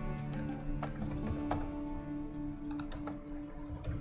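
Computer keyboard keys clicking at irregular intervals, entering values into a drawing program, over background music with sustained notes.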